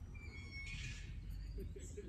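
Faint outdoor background: a low rumble, with a faint thin high whistle and a brief high hiss in the first second.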